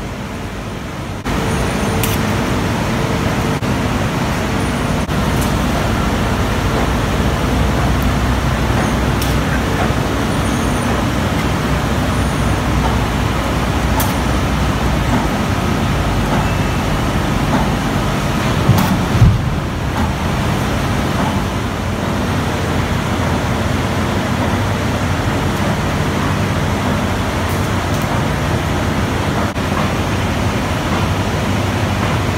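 Steady industrial plant noise on a steel-works floor: a constant low machinery rumble with hiss, with a couple of sharp knocks about two-thirds of the way through.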